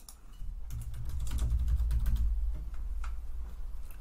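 Typing on a computer keyboard: a run of key clicks as a search term is typed, over a low steady rumble that starts about a second in.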